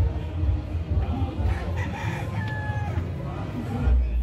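A rooster crowing once, starting about a third of the way in and ending in a long held note, over the chatter of a crowd.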